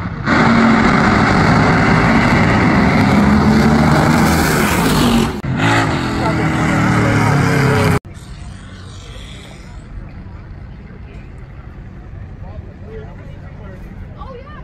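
Drag racing cars running at full throttle down the strip, very loud, starting abruptly just after the start, with a brief dip about five seconds in, and cutting off suddenly about eight seconds in.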